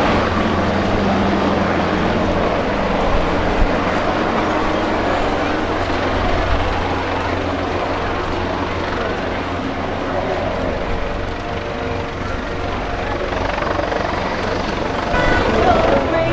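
Military rotorcraft flying by with a steady low drone of rotors and turbine engines.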